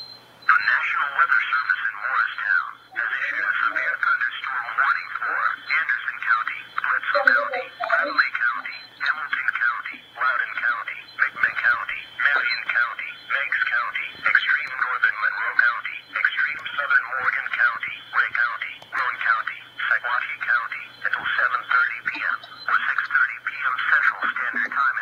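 Emergency Alert System broadcast voice reading a severe thunderstorm warning, heard through a small speaker with a thin, narrow sound over a steady low hum.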